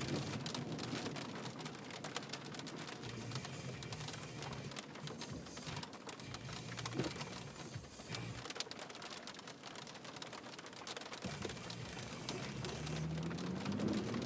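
Rain falling on a car's roof and windshield, heard from inside the cabin as a steady hiss with many small drop ticks. A low rumble builds in the last few seconds.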